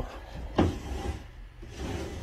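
Wooden under-bed storage drawer of a daybed being handled, with wood rubbing on wood and a soft knock about half a second in.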